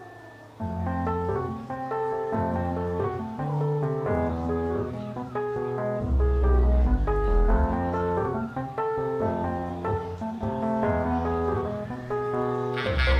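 Live band music without vocals: a Nord Stage 2 keyboard and guitar play a melodic instrumental passage over a moving bass line, starting about half a second in after a quiet fading note.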